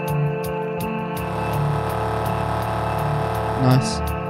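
Live vocal loop-station beatbox routine: layered held vocal chords with a steady ticking hi-hat about four times a second. A little over a second in, the bass beat drops out and a hissing build-up swells, ending in a short loud hit just before the beat comes back.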